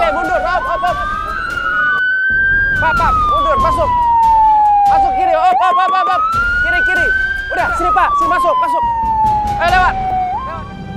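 Ambulance siren wailing, its pitch rising and falling slowly in cycles of about four to five seconds.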